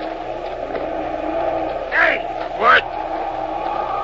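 Steady rushing wind, a studio sound effect for a desert sandstorm, with two brief snatches of a man's voice about two seconds in and just before three seconds.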